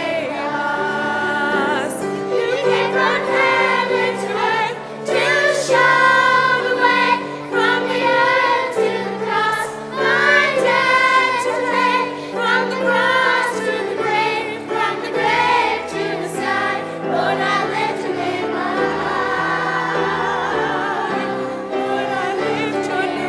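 Choir and congregation singing a recessional hymn in a church, with instrumental accompaniment holding low notes beneath the voices.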